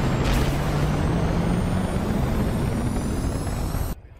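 Twin jet engines of an F/A-18 Super Hornet running at full power: a loud, steady rushing noise with a low hum and a thin high whine that both rise slowly in pitch. It cuts off suddenly just before the end.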